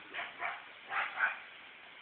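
A dog barking in four short, high yips, in two quick pairs, the last the loudest.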